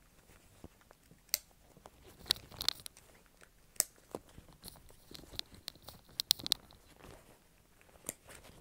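Plastic side-release buckles and nylon webbing straps of a chest-therapy vest being fastened and adjusted: scattered sharp clicks and short rubbing sounds, the loudest click about six seconds in.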